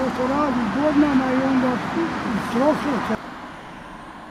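A man talking over steady road traffic noise; about three seconds in the sound cuts abruptly to a quieter steady hum of traffic.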